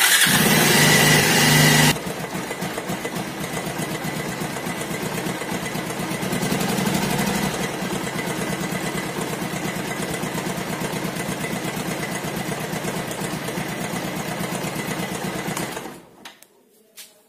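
Bajaj Pulsar single-cylinder engine running, loud for the first two seconds and then settling into a steady idle with a fast, even clatter. It cuts off just before the end. The clatter is the noise of a slack, worn timing chain.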